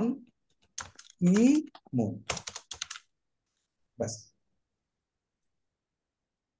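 Typing on a computer keyboard, with a quick run of keystrokes about two and a half seconds in. A man's voice speaks in short snatches between the keystrokes.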